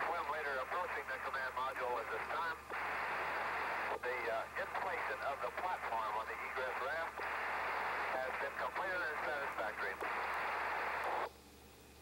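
Two-way radio traffic from the recovery forces: a voice over a narrow, hissy radio channel, with stretches of plain static between phrases, cutting off abruptly near the end.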